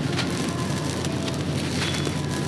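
Gritty concrete crumbling: a dense, steady run of small crackling, grainy breaks.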